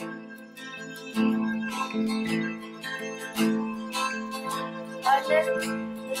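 Acoustic guitar picking a melody in a folk band's instrumental passage, its notes ringing over a held low note and getting louder about a second in. A wavering higher line comes in near the end.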